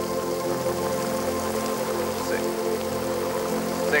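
Steady rain falling, mixed with background music of long held chords.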